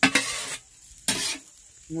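Kottu roti being made: flat metal blades striking and scraping chopped roti and egg on a hot iron griddle, twice, about a second apart.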